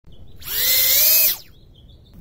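Tinyhawk brushless micro quad's motors spinning its quad-blade props in a burst of a little under a second, a high whine that rises and then falls away. This is turtle mode flipping the upside-down quad back onto its feet.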